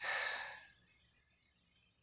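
A man's short, sigh-like breath of about half a second at the start, then quiet.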